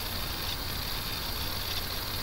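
Steady background hiss with a low hum: the recording's room tone, with no distinct event.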